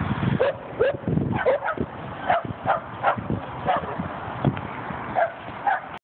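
Dog barking in short, repeated barks, about a dozen over several seconds, the play barking of dogs romping together.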